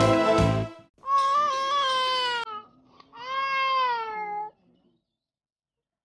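Theme music ends under a second in; then an infant cries twice, two drawn-out wails each about a second and a half long, the second rising then falling in pitch.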